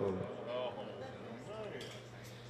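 Faint, scattered voices from a club audience, with a steady low electrical hum from the sound system underneath.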